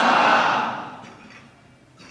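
The preacher's amplified voice ringing on through the mosque's loudspeakers after he stops, dying away over about a second and a half.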